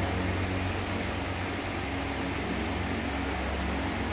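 Cheetah cub purring steadily, a low continuous purr close to the microphone.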